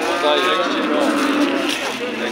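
A cow moos once, a long call of about a second and a half, over the hubbub of a crowd.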